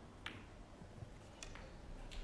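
Snooker balls clicking faintly as the black is potted: a sharp click about a quarter second in as the cue ball strikes the black, a soft knock about a second in, and another sharp click shortly after.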